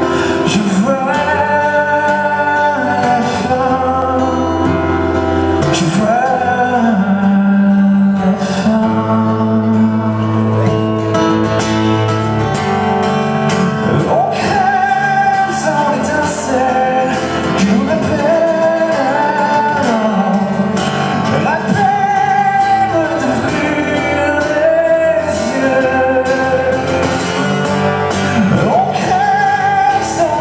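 Live song: a man singing into a microphone while playing an acoustic guitar, his voice gliding through long held notes over a steady guitar accompaniment.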